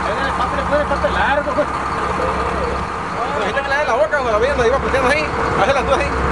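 Fishing boat's engine running with a steady low drone and a constant hum, while voices call out indistinctly over it during the marlin fight, loudest about halfway through.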